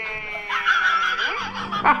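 A man's long drawn-out groan, sliding slowly down in pitch, gives way about half a second in to loud laughter and shrieking from several men.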